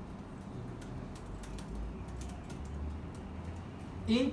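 Keystrokes on a computer keyboard: a quick, irregular run of light clicks as a line of code is typed, over a low steady hum.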